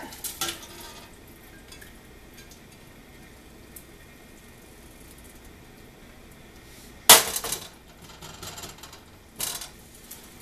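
Frozen brown rice being tipped from a plastic bag into a stainless steel stockpot, with metal clattering. It is mostly quiet, then a sharp clatter about seven seconds in and a smaller knock near the end.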